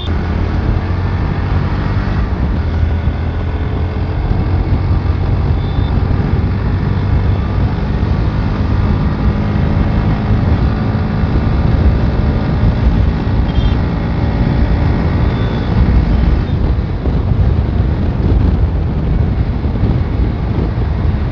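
Bajaj Pulsar NS125's single-cylinder engine running steadily while the motorcycle rides at road speed, its pitch drifting up and down slightly with the throttle. A heavy low wind rumble on the microphone runs under it.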